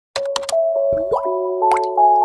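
Animated logo intro: a quick run of cartoon pop sound effects and a short rising glide over held chime-like tones.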